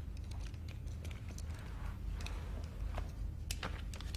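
Film room tone: a low steady hum with scattered faint clicks and rustles of small movements at a table.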